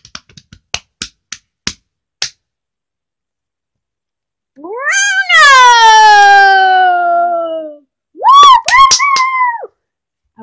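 A child's imitated drumroll: scattered clicks that thin out and stop about two seconds in. Then a child's voice holds one long high note that slides slowly down in pitch, and near the end comes two short high sung notes, a vocal fanfare for the winner's announcement.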